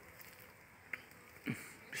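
Honeybees buzzing faintly at a hive entrance, with a soft click about a second in.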